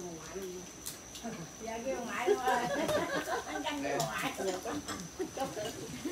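Indistinct conversation of several people at a shared dinner table, loudest in the middle, with a few sharp clicks of tableware.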